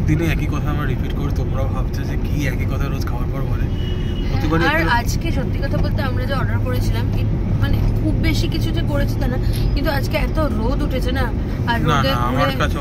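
Steady low rumble of a car heard from inside its cabin, with voices and laughter over it.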